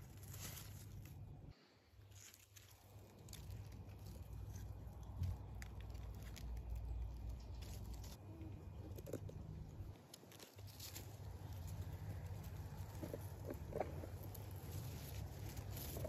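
Tomato plant leaves and stems rustling and crackling as a hand moves through the foliage, over a steady low rumble on the microphone.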